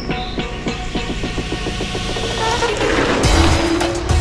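Background music with a steady beat over outdoor rushing noise that swells about three seconds in as a JackRabbit micro electric bike rides past close by.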